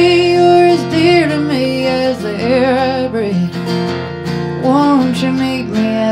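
A woman singing long held, wavering notes over her own acoustic guitar accompaniment in a live folk song.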